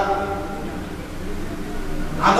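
A man's voice through a headset microphone trails off at the start, then a pause with only a faint steady hum.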